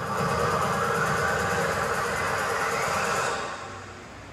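A long noisy whoosh in the dance track, a rumbling hiss whose upper band slowly rises, dying away about three seconds in.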